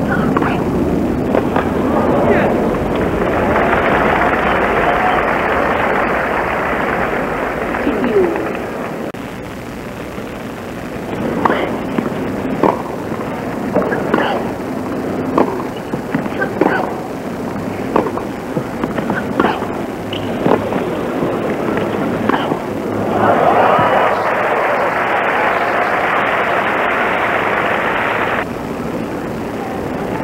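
Tennis crowd applauding, then a rally of sharp racquet-on-ball strikes about a second apart, then the crowd applauding again until the applause cuts off abruptly near the end.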